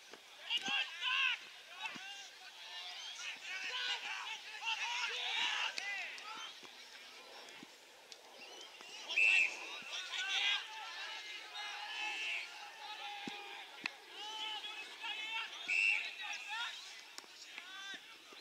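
Australian rules footballers calling and shouting to each other across an open ground, unintelligible at a distance, with two louder short calls about nine and sixteen seconds in.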